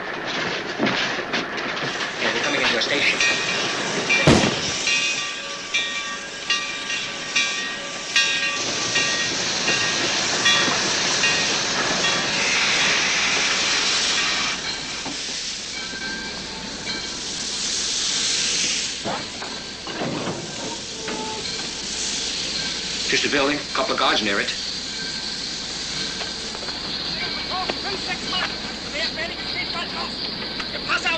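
Steam train sounds: a high metallic squeal for the first half, bursts of steam hissing, and several sharp metal clanks, the loudest about four seconds in.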